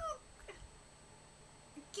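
A short vocal sound falling in pitch right at the start, then quiet room tone.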